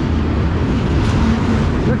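Freight cars of a long CSX manifest train rolling past close by: a steady, loud rumble of steel wheels on the rails.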